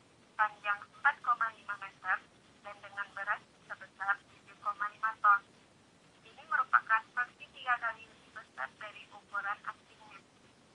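Speech only: a woman narrating, her voice thin, with the lows cut away as if heard over a telephone.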